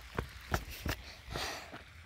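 Handling noise from a phone held while walking: a few sharp clicks and knocks on the microphone, then a short rustle, over a low rumble.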